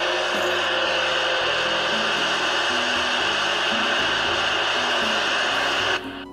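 President Harry III CB radio's speaker giving out steady receiver hiss with the squelch open and the microphone unplugged, a sign that pulling the mic plug leaves the speaker live. The hiss cuts off suddenly at the end, over soft background music.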